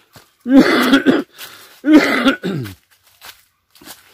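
Two loud, short vocal outbursts from a person close to the microphone, about a second apart, the second trailing off in a falling pitch.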